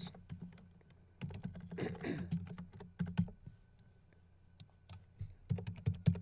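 Typing on a computer keyboard: quick runs of keystrokes in several short bursts with pauses between.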